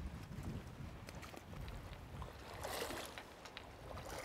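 A shallow river running over stones, with wind on the microphone, a few small scattered clicks, and a brief louder rush about three seconds in.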